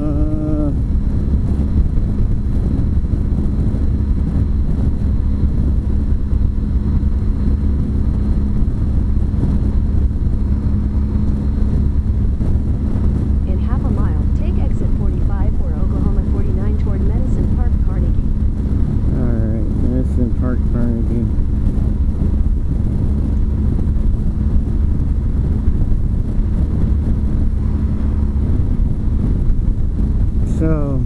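Honda CTX1300 motorcycle cruising at steady highway speed: a constant low drone of its V4 engine mixed with road and wind noise, with no change in pace.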